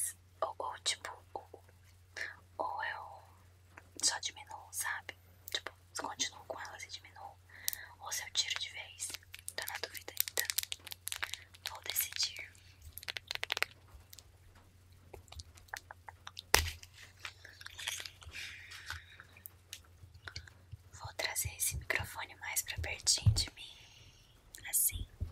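Close-miked ASMR mouth sounds: a whispered 'tuc tuc' repeated in quick clicky runs, mixed with soft brushing of a makeup brush over the camera lens, with one sharper tap a little past the middle.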